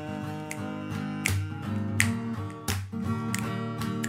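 Instrumental passage of a song: strummed guitar chords, struck every half second or so.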